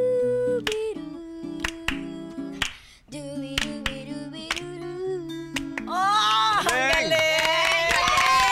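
A boy scat-singing wordless syllables, first one long held note and then short sung notes, over acoustic guitar chords. About six seconds in, several people break into excited cries and clapping.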